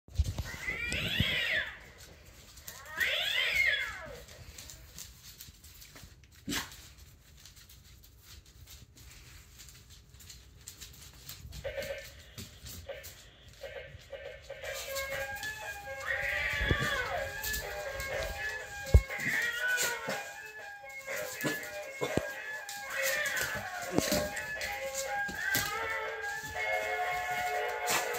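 Animated toy cat making two meows near the start, each rising then falling in pitch, then from about halfway playing a tinny electronic tune with more meows in it.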